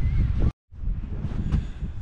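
Wind buffeting the microphone, a dense low rumble, broken by a brief dropout to silence about half a second in.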